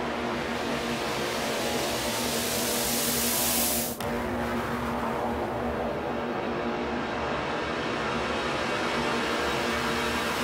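Psytrance intro: a white-noise sweep rises over held synth tones for about four seconds and cuts off abruptly, then a falling noise sweep fades away under the sustained synth chord.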